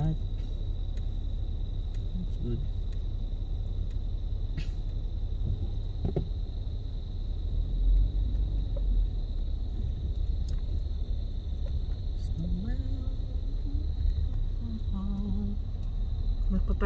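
Low, steady rumble of a car's engine and tyres heard from inside the cabin as it creeps along, swelling briefly about eight seconds in, with a faint steady high tone over it.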